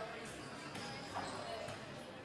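Basketballs bouncing on a hardwood gym floor amid the background voices of players, in a large indoor gym hall.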